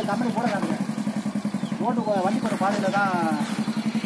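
Small engine of a farm machine running steadily with an even, low throbbing hum as it pulls a soil-levelling bar through stony ground.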